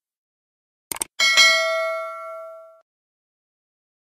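Subscribe-button animation sound effects: a quick double mouse click about a second in, then a single bright bell ding that rings out and fades over about a second and a half.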